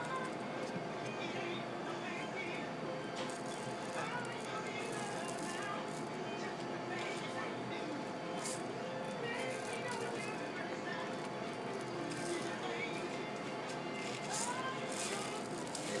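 Restaurant dining-room background: a steady murmur of other diners' voices and background music, with a few short clinks and scrapes at the table as a spoon and topping cups are handled around a glass sundae bowl.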